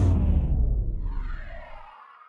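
Broadcast graphics transition sound effect: a deep boom hits at the start with a whoosh above it, then fades away over about two seconds.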